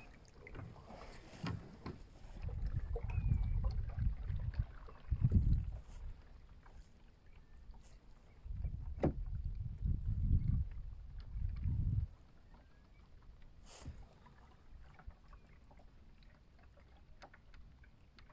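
Water lapping and trickling against the hull of a wooden Mirror sailing dinghy under way, with scattered small ticks. Two stretches of low rumble, each a few seconds long, come in the first part and the middle.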